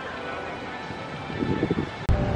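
Steady outdoor background noise, with a faint voice briefly about one and a half seconds in.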